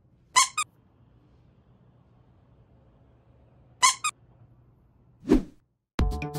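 Edited-in squeaky sound effects: two quick squeaks near the start, the same double squeak again about three and a half seconds later, then a short whoosh just before the end.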